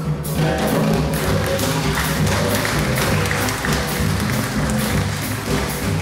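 Live small-group hard-bop jazz: drum kit keeping a steady beat with upright bass and piano, and the horn section of saxophone, trumpet and trombone joining in, the sound filling out from about two seconds in.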